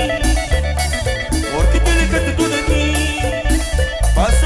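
Live band music from a drum kit, guitar and heavy bass playing a steady dance beat.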